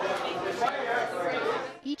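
Chatter of many people talking at once, a tangle of overlapping voices in a large room, fading near the end.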